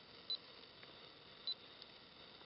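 A digital camera's focus-confirmation beep, sounding twice as two short, high beeps about a second apart over a faint steady hiss.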